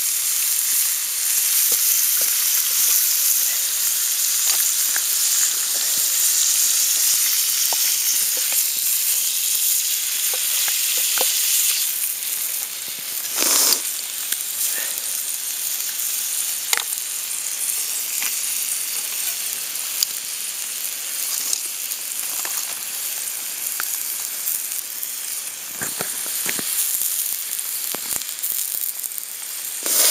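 Slices of ham sizzling in a frying pan on campfire embers: a steady frying hiss with scattered small pops. The hiss eases a little partway through, with one brief louder burst of it near the middle.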